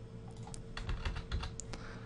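Computer keyboard being typed on: a quick, irregular run of key presses from about half a second in to near the end, over a faint steady hum.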